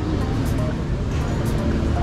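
City street ambience: a steady low rumble of traffic, with snatches of people talking close by.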